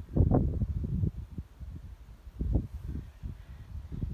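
Wind buffeting a phone's microphone outdoors: an uneven low rumble in gusts, strongest in the first second and again about two and a half seconds in.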